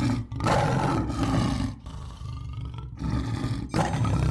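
Lion roar sound effect: a series of deep, rough roars and growls, with short breaks about two and three seconds in and a fresh roar starting near the end.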